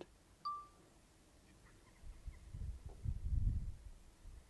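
A single short electronic beep from the drone control app as video recording starts. From about two seconds in there is a low rumble.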